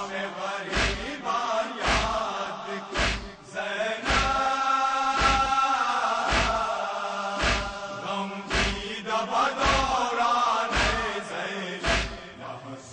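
Male voices chanting a noha (Urdu lament) in unison. A steady chest-beating thump (matam) lands about once a second, and a long held note falls near the middle.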